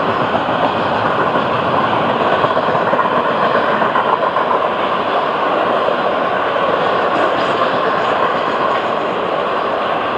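Intermodal freight cars of a Florida East Coast Railway train rolling past close by: a loud, steady rush of wheels on rail with no break.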